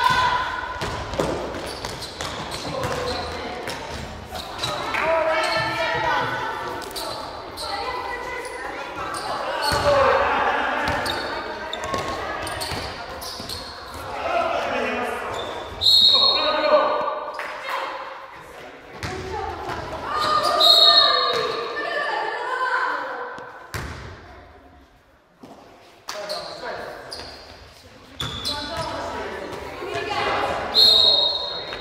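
A basketball bouncing on a gym floor during play, with voices calling out, all echoing in a large hall. A referee's whistle sounds sharply about halfway through and again a few seconds later.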